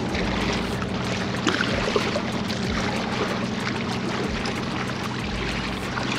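Steady wind and water noise from waves lapping against jetty rocks, with a low steady hum underneath.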